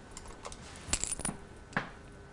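A few light clicks and clinks of small makeup containers and tools being handled, such as a pot of highlighter being picked up and opened. They come in a short cluster about a second in, with one more near the end.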